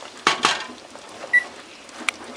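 Wooden spoon stirring chicken thighs in a thick soy-sauce braise in a metal stockpot. It knocks against the pot twice in quick succession near the start and gives a short ringing clink about two-thirds of the way through.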